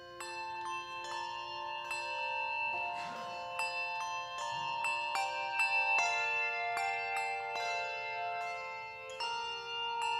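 Handbell choir playing a piece: many brass handbells struck in overlapping chords, each note ringing on under the next, with a fresh group of strikes about nine seconds in.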